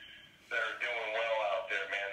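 Music with a male singing voice. The voice drops out for about half a second near the start, then the singing comes back.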